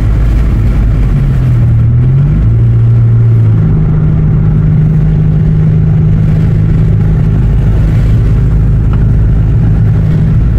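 Chevy Malibu's engine and road rumble heard from inside the cabin while driving. The engine note climbs as the car speeds up, then holds steady from a few seconds in.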